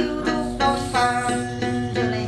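Đàn tính, the Tày long-necked gourd lute, plucked in a quick run of repeated notes, about three to four a second, as accompaniment to a hát then ritual chant.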